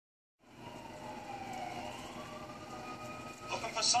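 A distant siren, its tone slowly falling and rising, over steady city street noise.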